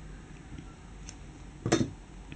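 Scissors snipping cotton crochet thread: one sharp snip near the end, with a faint click about a second before.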